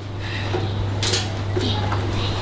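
A few light clinks and knocks of small objects handled on a table, the sharpest about a second in, over a steady low hum.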